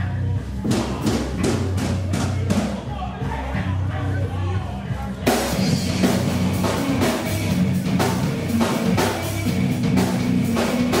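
Live rock band playing: electric guitars and bass over a drum kit. A little under a second in the drums start hitting, and about five seconds in the whole band comes in harder with crashing cymbals.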